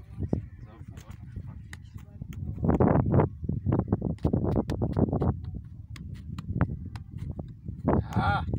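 A football being juggled: a run of irregular light taps of foot on ball, with children's voices chattering over it.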